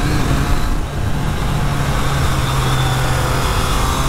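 Triumph Trident 660's inline three-cylinder engine running at a steady cruise on the road, its note holding a fairly even pitch after a brief dip about a second in, under heavy wind noise.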